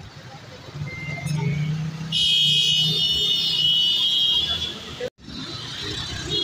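City street traffic with vehicle engines running, and a loud high-pitched tone from a vehicle, a horn or brake squeal, lasting about two and a half seconds from about two seconds in. The sound drops out for an instant just after five seconds.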